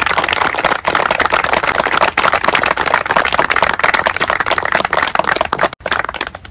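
A small seated audience applauding: many hands clapping at once in a dense, steady patter.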